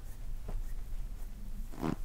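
Hands kneading and rubbing an oiled bare foot, a soft skin-on-skin sound over a steady low hum. One short, low sound near the end is the loudest thing.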